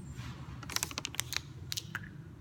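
Cap of a plastic water bottle being twisted open: a quick run of sharp plastic clicks about a second in as the seal ring snaps, and a couple more near the end, over a steady low hum.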